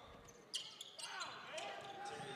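Faint sounds of basketball play on a hardwood gym court: a ball bouncing, with a sharp knock about half a second in and short squeaks of sneakers on the floor.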